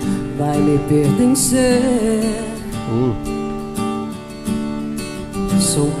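Live acoustic guitar strumming a song's intro, with a woman's voice coming in to sing the first line near the end.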